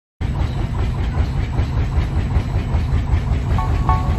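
Klotok river boat's diesel engine thumping steadily, the 'tok tok' that gives the boat its name, at about four beats a second. Music with a repeating melody comes in near the end.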